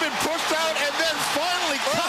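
Speech only: a television football commentator's voice, raised and excited as he calls a long touchdown run.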